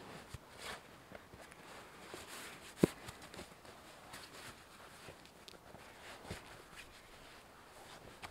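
Faint rustling of a nylon stuff sack as its compression straps are pulled tight around a packed sleeping bag, with a few small ticks and one sharp click about three seconds in.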